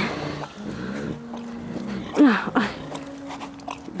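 Amur tigress making low, drawn-out vocal sounds close to the fence. Two of them are held steady for about a second each, and one call rises and falls about two seconds in.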